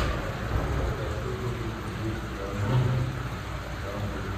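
Water splashing and bubbling in an aquarium tank: a steady rushing hiss with a low rumble underneath.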